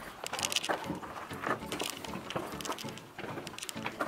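Footsteps and scuffing of a group of people walking one behind another: irregular soft clicks and shuffles, with faint murmuring behind.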